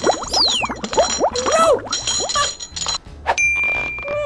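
Cartoon sound effects as a metal chain hooks the pillow and hauls it up: a run of quick rising-and-falling chirps with a falling whistle near the start, metallic clanks, then a bell-like ding about three quarters of the way in that rings on.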